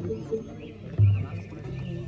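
Balinese gamelan ensemble playing, with one strong deep beat about a second in and a low held tone after it.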